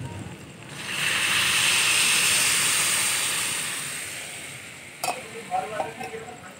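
Water poured into a hot wok of oil-fried dried peas and potatoes, giving a loud sizzle about a second in that slowly dies away over the next few seconds. A sharp knock of the spatula on the pan comes near the end.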